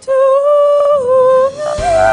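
A young woman singing solo into a microphone. She holds one long note that dips slightly about a second in, then moves up to a new note near the end.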